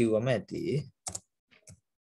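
A voice speaks for about the first second, with a few computer keyboard keystroke clicks afterwards as text is typed.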